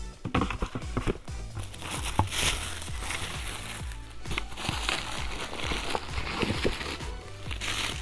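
Tissue paper rustling and crinkling as it is unfolded and handled, with light knocks from a cardboard gift box.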